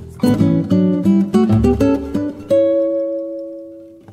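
Acoustic guitar music: a run of plucked notes, then a held chord that slowly fades away.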